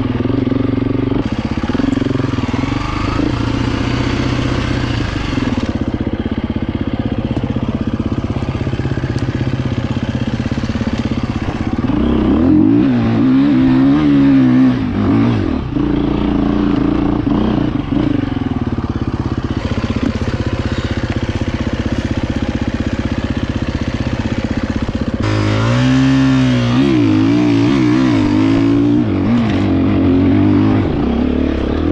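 Husqvarna enduro motorcycle engine heard from on the bike, running at low revs over rough forest trail with the throttle blipped repeatedly. The engine note rises and falls quickly about halfway through and again near the end.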